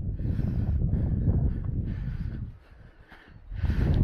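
Wind buffeting the microphone: a low, uneven rumble that drops away about two and a half seconds in and comes back just before the end.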